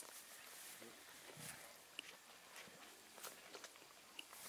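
Near silence outdoors: a few faint ticks and rustles, with a soft low sound about one and a half seconds in.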